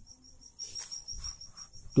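A cricket trilling steadily at a high pitch, with faint scratchy sounds of a pen on paper about halfway through.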